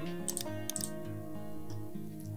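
Background music with a soft steady beat. Over it come two quick pairs of computer keyboard key clicks in the first second, as the Photoshop canvas zooms out.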